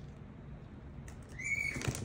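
A pet bird gives one short whistle about one and a half seconds in, over quiet rustling of handled packaging.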